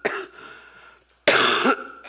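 A woman coughing into her fist close to a podium microphone: a short cough at the start, then a louder one about a second and a half in.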